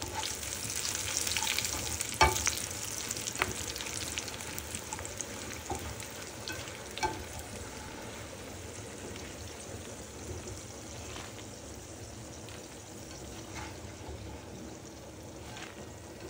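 Dried chiles de árbol frying in hot oil in a skillet: a steady sizzle, strongest in the first few seconds and slowly dying down. A few sharp clicks of a slotted spatula against the pan as the chiles are moved, the loudest about two seconds in.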